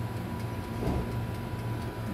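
Electric countertop oven running while baking: a steady low hum with a thin, even whine over it, and faint ticking from its dial timer.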